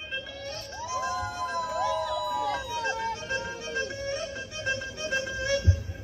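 Soft, slow intro of a dance track played over the DJ's sound system: a gliding melody line over held tones, with no beat yet.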